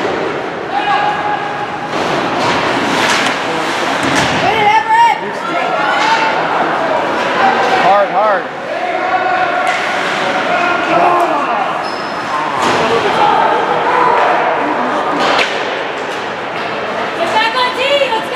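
Ice hockey game in an indoor rink: spectators calling out and shouting throughout, with sharp knocks and thuds of pucks, sticks and players against the boards.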